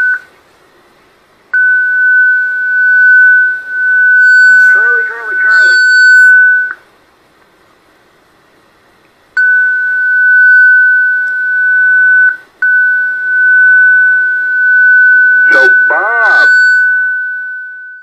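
A steady, high, single-pitched whistle, the beat note of an unmodulated carrier on the frequency, heard through an Icom transceiver's speaker on 40-metre lower sideband. It comes on in three long stretches, with a few seconds' gap after the first and a brief break before the last. A voice breaks through underneath it twice.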